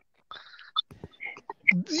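Faint whispered, breathy voice sounds with a few small clicks over a video-call line, followed by a man starting to speak near the end.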